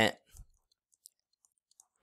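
A few faint, short clicks spaced out over a nearly silent stretch: a stylus tapping and writing on a drawing tablet.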